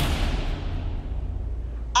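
A dramatic sound-effect hit added in editing: a sudden boom whose high hiss fades away over about a second, over a deep low rumble that holds steady.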